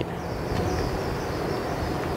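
Steady outdoor background rumble, mostly low, with a faint high hiss over the first part.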